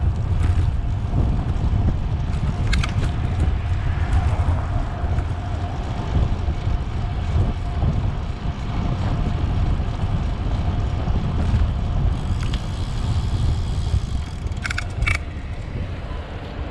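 Wind buffeting the microphone of a camera on a moving bicycle, a steady low rumble of wind and tyre-on-road noise. A few short clicks or rattles come about three seconds in, with a quick cluster near the end.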